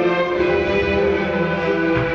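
Youth symphony orchestra playing an overture, bowed strings (violins and cellos) to the fore with winds, holding chords at an even level.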